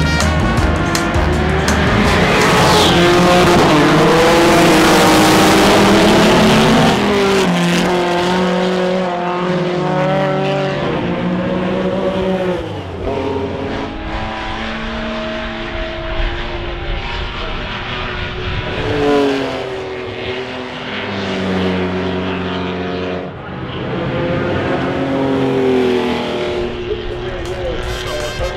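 A field of historic 1960s GT race cars, Porsche 911s and an MG B among them, starting a race together: many engines revving hard as the pack pulls away, loudest in the first few seconds. Then single cars accelerate past, their engine notes climbing and dropping back at each gear change.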